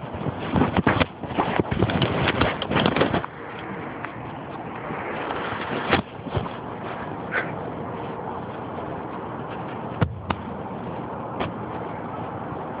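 Handling noise of the recording device: dense rubbing and knocking against the microphone for about three seconds, then a steady hiss with a few single knocks.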